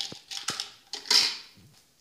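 A few sharp clicks and a short rustle about a second in: handling noise close to the microphone while a jelly bean is held up to the lens.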